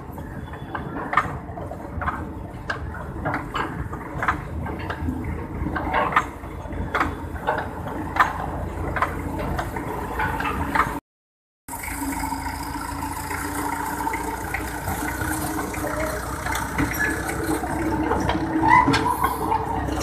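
Small children's park train running on its track, with a low rumble and sharp metallic clicks from its wheels over the rail joints. After a brief dropout partway through, the clicks give way to a steadier running noise, with children's voices near the end.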